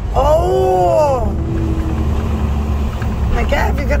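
A truck's engine running with a steady low rumble, heard inside the cab. Near the start a drawn-out voice sound rises and falls in pitch for about a second, and talking begins near the end.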